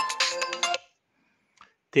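Smartphone clock alarm ringtone sounding for under a second, a melody of steady tones, then cutting off suddenly.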